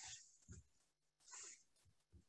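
Near silence on a video call, broken by two faint hissy noises and a few soft low thumps.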